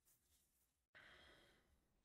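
Near silence, with one faint, short breath or sigh about a second in.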